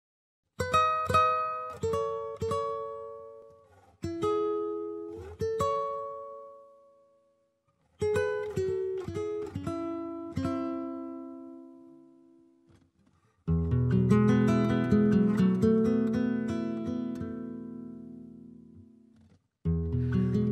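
Solo acoustic guitar (violão) playing an introduction. Phrases of plucked notes are left to ring and die away, with short pauses between them, then a full chord about thirteen seconds in rings out for several seconds.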